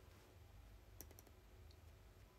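Near silence: room tone, broken by a few faint, short clicks about a second in.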